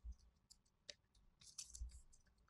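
Faint clicks from computer input while working in drawing software: a few isolated clicks, then a quick cluster near the end, in near silence.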